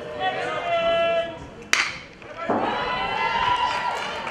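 Long, drawn-out shouts from voices at the field, then, about two seconds in, a single sharp crack of a metal baseball bat hitting the pitch. Loud sustained shouting follows as the ball is put in play.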